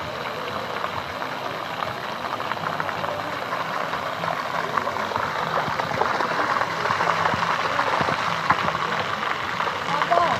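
Shallow water running in a sheet over paving, a steady rushing hiss, with splashes of a child's bare feet running through it, more of them in the second half.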